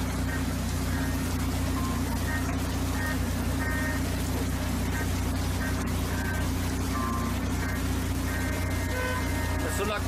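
Steady low wind rumble on the microphone of an outdoor phone recording, with faint, indistinct voices of onlookers in the background.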